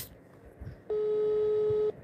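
A telephone ringing tone on the line: a single steady electronic tone about a second long, starting about a second in and cutting off sharply, the signal that a call is ringing through and not yet answered.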